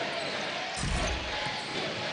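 Basketball arena during live play: steady crowd noise, with one dull thud of the ball on the hardwood court about a second in.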